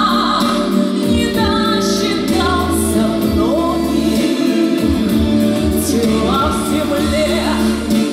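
A woman singing a song into a handheld microphone, with instrumental accompaniment and a bass line underneath.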